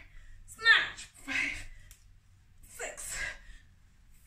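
A woman's sharp, forceful breaths or short vocal bursts, three in about four seconds, the loudest about half a second in. They come with the effort of swinging dumbbells through snatch reps.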